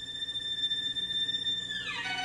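Solo violin holding one long, very high note, then sliding steeply down in pitch near the end.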